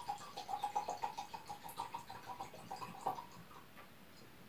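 Dark alcohol tincture pouring from a small bottle into a wine glass: a faint, irregular gurgle of liquid that stops about three seconds in, with a sharper click just as it ends.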